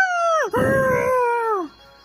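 A man screaming in fright, two long held cries that each drop sharply in pitch as they end. Faint steady music tones begin as the screaming stops near the end.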